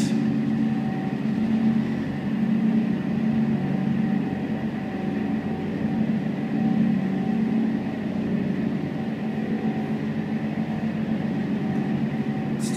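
Thermo King SB-210 reefer unit running steadily, its diesel engine giving a low, even hum, heard from inside the refrigerated trailer.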